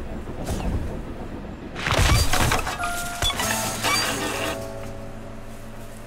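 Cartoon soundtrack: a low rumble, then a sudden loud crash about two seconds in as a character tumbles from a moving train, followed by a second clatter and music with held notes.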